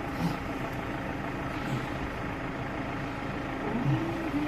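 Steady low background rumble with no distinct events, like a machine or engine running.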